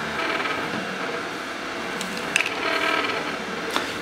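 DIY EleksMaker laser engraver running an engraving job on an aluminum plate: its stepper motors drive the laser head with a steady mechanical whine that shifts in pitch from one move to the next, with a couple of short clicks.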